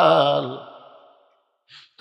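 A man preaching holds the last syllable of a chanted phrase, which fades away about a second in. A short breath follows just before he speaks again.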